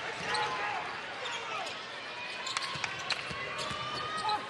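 A basketball bouncing on a hardwood court, a few sharp bounces in the second half, over the steady murmur of an arena crowd and distant voices.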